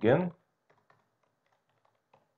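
A short spoken sound right at the start, then scattered faint keystrokes on a computer keyboard as code is typed.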